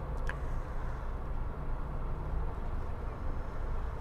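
Car engine and tyre noise heard from inside the cabin while driving: a steady low rumble.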